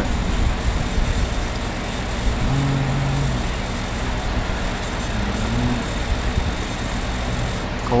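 Steady low rumble and hiss of background noise, with a faint low voice-like sound briefly about two and a half seconds in and again near five seconds.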